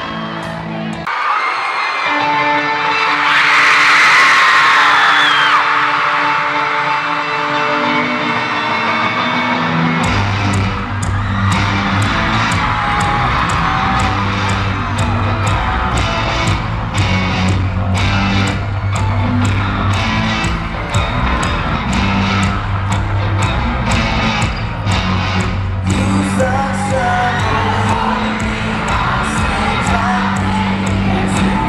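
Live band music in a large hall: a sparse intro of hollow-body electric guitar and held chords, with the crowd screaming a few seconds in. About ten seconds in, drums and bass come in with a steady beat of about two hits a second.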